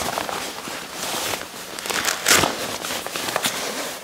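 Rustling and crinkling of a Level 6 Odin drysuit's waterproof nylon leg as it is handled and pulled down over the built-in sock at the ankle, with a louder scuff a little after two seconds in.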